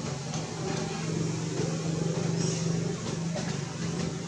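A steady low engine hum, swelling a little in the middle seconds, with indistinct voices under it.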